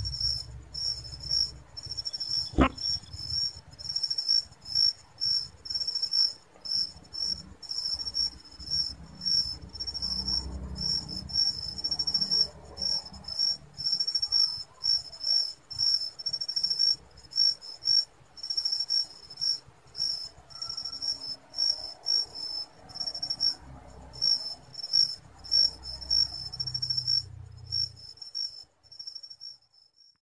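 Cricket chirping steadily in a high pitch, about two chirps a second, with a low rumble underneath and a single sharp click about two and a half seconds in.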